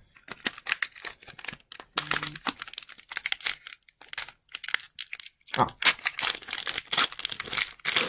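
The plastic wrapper of a hockey card pack being torn open and crinkled, crackling in quick irregular bursts with a quieter stretch about midway.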